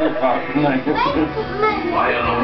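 Several adults' voices at once, talking, calling out and half-singing over one another.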